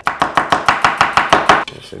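Knife slicing an onion thinly on a wooden cutting board: a fast, even run of about eight cuts a second that stops shortly before the end.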